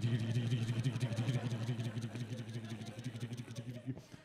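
A man making a low, steady rattling buzz with his voice into a microphone, a mouth imitation of a tombola drum spinning. It fades gradually towards the end.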